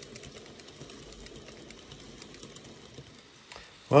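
N gauge model train hauling a rake of tank wagons along layout track: a low, steady rattle of small wheels and motor with fine ticking.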